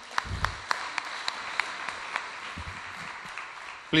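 Audience applauding: a steady patter of many hand claps, with a low thump just after it begins.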